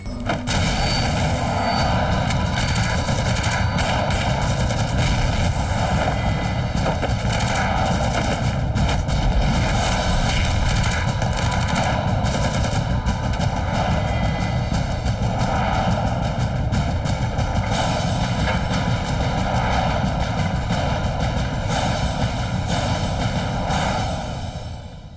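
Sustained automatic rifle fire in a gunfight: rapid shots from several guns run on without a break, at a steady high level.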